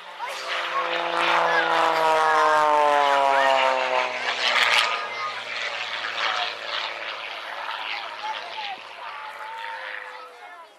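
Single-engine aerobatic propeller plane passing by: a loud engine-and-propeller note that falls steadily in pitch as it goes past, then fades away over the following seconds.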